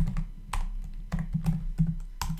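Typing on a computer keyboard: an irregular run of key clicks as the word "node_modules" is typed.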